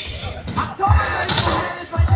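BMX bike tyres rolling fast down a wooden skatepark ramp into a jump, with a couple of dull thumps about a second in.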